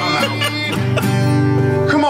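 Acoustic guitar strummed in a slow country tune, chords ringing under a held melody line.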